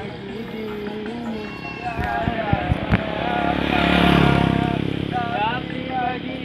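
Song with a singing voice playing from a portable music speaker, while a motorcycle passes close by, getting louder to a peak about four seconds in and then fading away.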